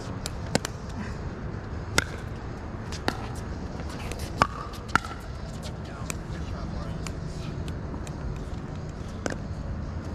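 Pickleball paddles striking the hard plastic ball during a doubles rally: sharp pops at irregular intervals, about seven in all, two of them close together around the middle.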